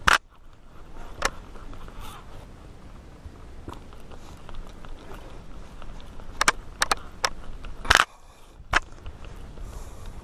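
Baitcasting reel being worked by hand while a hooked fish is reeled in: a scatter of sharp clicks and knocks over a faint steady background, with a loud knock at the start, a quick run of clicks a little before the loudest one about eight seconds in.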